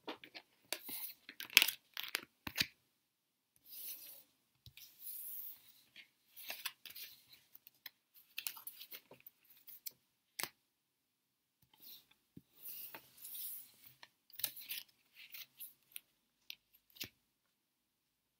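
Thin cardboard cards being slid across a wooden tabletop, picked up one after another and tapped together into a stack: a run of dry sliding rubs and light ticks. It stops about a second before the end.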